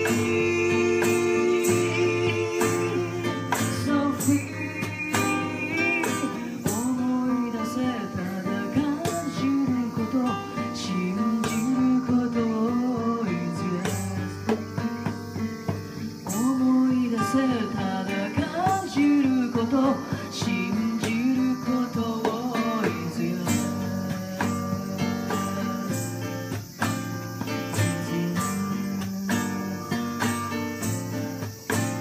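A live acoustic song: a strummed acoustic guitar with singing over it, the melody moving up and down throughout.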